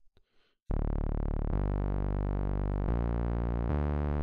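Bitwig Polysynth playing low, sustained synth notes fed by a Note Receiver: a run of held notes that starts about a second in and changes pitch three times.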